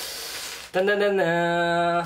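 A man's voice singing a drawn-out suspense note: a short higher note, then a long held lower one, as a mock dramatic build-up. Just before it, a brief rustle of the plastic mailer bag.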